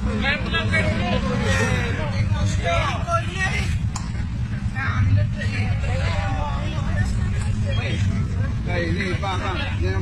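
A crowd of many people talking and calling out at once, voices overlapping throughout, over a steady low hum of vehicle noise.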